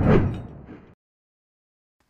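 A whoosh-type transition sound effect with a sudden low, heavy start that fades away over about a second.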